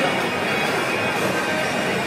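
Rock band playing live, the music carried through a baseball stadium's public-address sound.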